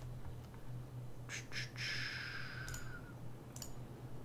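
Several scattered clicks from a computer mouse and keyboard over a steady low hum, with a soft hiss about two seconds in.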